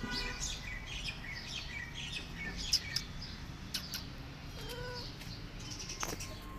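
Small birds chirping in quick, high notes through the first half, with a few sharp clicks around the middle, then a single short meow about five seconds in.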